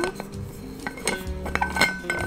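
Small stainless-steel vacuum food jar being handled, its lid and metal body giving a few light metallic clicks and clinks as they are turned against each other.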